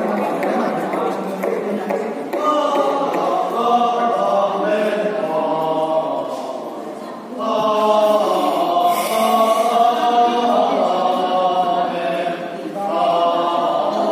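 A choir singing long, sustained chords, with people talking over and around it; the singing breaks off briefly about seven seconds in, then comes back.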